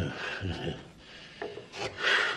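Rubbing and scraping of things being handled and moved on a wooden desk, in several short strokes. A man's brief low vocal sound opens it.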